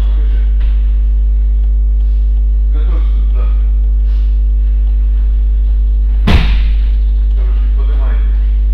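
Loud, steady electrical mains hum on the recording, with faint voices and a single sharp thud about six seconds in.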